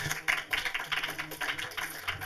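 An audience getting up to leave a cinema: a dense, irregular patter of small knocks, clicks and rustles over a faint low hum.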